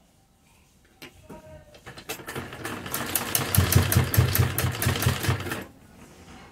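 Domestic sewing machine stitching through layered fabric: a few clicks, then it runs up to speed with a fast, even needle rhythm for about three seconds and stops suddenly near the end.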